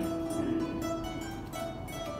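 Plucked notes on a long-necked lute with a gourd body: a low note rings on while a few higher notes are picked over it.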